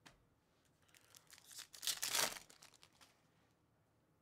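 The foil wrapper of a Bowman Chrome U football jumbo trading-card pack torn open and crinkled, a rustling tear that builds about a second in, is loudest around the middle and fades out about three seconds in.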